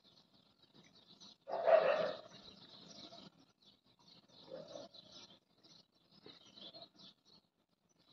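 Slow sipping and swallowing of water from a steel tumbler, in small mouthfuls. The loudest sound comes about a second and a half in, with fainter ones around four and a half seconds and near seven seconds.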